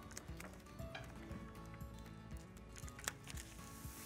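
Faint background music, with a few light clicks and a brief papery rustle near the end as a large paper sheet is pressed flat onto a whiteboard.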